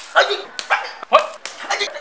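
A run of short, sharp yelping cries, about four in two seconds, with a few sharp clicks among them.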